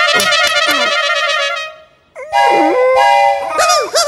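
Film soundtrack: a long, wavering wail for about a second and a half, then after a short break a held brass-like chord, with a voice rising and falling near the end.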